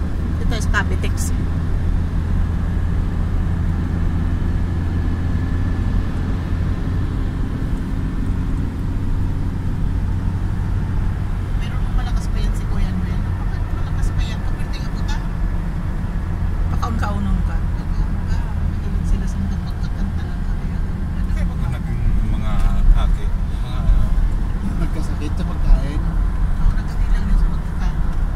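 Steady low rumble of road and engine noise inside a car cruising on an expressway, with faint voices in the cabin now and then.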